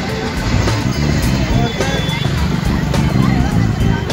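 Crowd voices and road traffic mixed together, with music playing.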